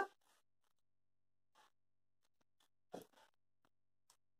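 Near silence, with one faint, brief sound about three seconds in.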